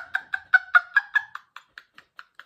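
A woman's put-on, high-pitched laugh in quick short pulses, about five a second, fading away toward the end. It is her intentional "rhino mom" laugh for a laughter exercise, with what she calls a bit of an English high-tea sound.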